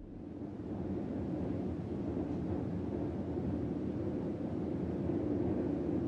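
A steady low rumbling noise, with no melody or beat: an ambient sound-effect drone.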